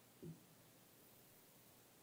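Near silence: room tone, with one brief soft low thump about a quarter of a second in.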